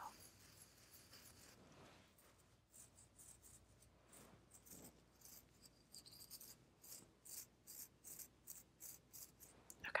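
Soft-bristled brush stroking through long hair, heard as faint short brushing strokes about two to three a second, starting a few seconds in.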